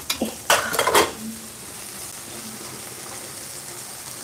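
Stainless-steel kitchen vessels clattering against each other as one is taken from a shelf, a few sharp knocks in the first second. After that comes a steady, low sizzle of frying.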